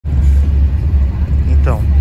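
Steady low drone of a bus's engine and road noise heard from inside the passenger cabin. A voice begins near the end.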